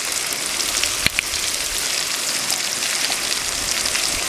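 Chopped onion and spice paste frying in hot oil in a metal kadai: a steady sizzle with fine crackles throughout, and a single sharp knock about a second in.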